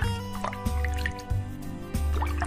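Children's background music with a steady bass line and held notes, dotted with short rising water-drop sound effects.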